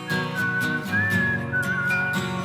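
Background music: a whistled melody wavering over acoustic guitar, with a steady light beat, as the instrumental part of a song.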